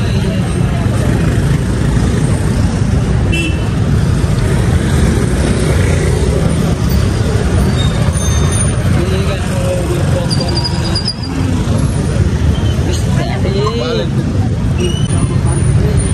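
Busy city street traffic: motorcycles and cars running close by with a steady low rumble, a few short high-pitched toots or whistles, and people talking in the background.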